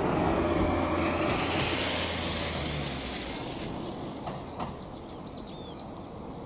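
A vehicle's rumble with a low hum, loudest at the start and fading away over several seconds; from about halfway in, small birds chirp.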